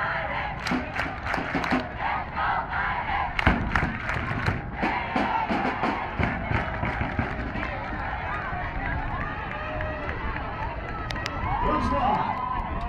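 A large crowd cheering and shouting, many voices at once, with scattered sharp hits, the loudest about three and a half seconds in.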